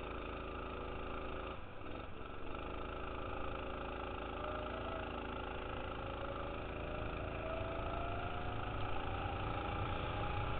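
Go-kart engine running under load, its note wavering briefly about two seconds in through a corner, then rising steadily in pitch as the kart accelerates down the straight.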